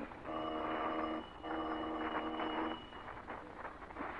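Doorbell sound effect in an old radio drama, rung twice with no answer: two steady rings of about a second each, with a short gap between them.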